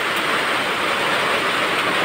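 Heavy typhoon rain falling in a steady downpour.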